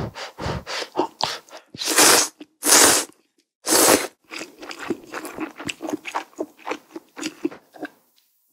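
Close-miked eating of ramen: three loud slurps about a second apart as noodles and broth are drawn in from a spoon, then quick soft chewing.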